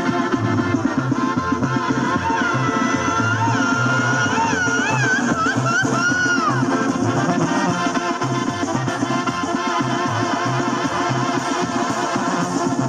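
Mexican banda music: a brass band with a steady bass line and drums. A high lead line with a wavering vibrato plays between about two and seven seconds in.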